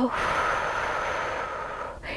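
A woman's long, deep exhale through the mouth: a steady breathy rush that slowly fades out over about two seconds.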